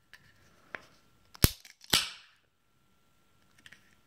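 Pull tab of a one-pint aluminium beer can being cracked open: a sharp click, then about half a second later a short hiss of escaping gas that dies away quickly. The can vents without gushing.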